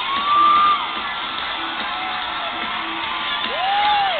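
Live rock band music heard from inside a concert crowd, with the crowd cheering. Two louder drawn-out cries rise and fall in pitch over it, one at the start and one near the end.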